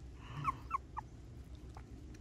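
Newborn puppy whimpering in short, high squeaks: three quick squeaks about a quarter second apart about half a second in, then a fainter one near the end.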